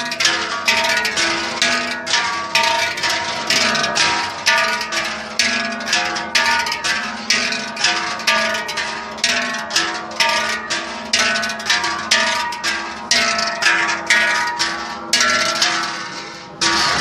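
Large cowbells worn by Silvesterchläuse, swung together in a steady rhythm. They clang about twice a second over a sustained, ringing chord of several bell pitches.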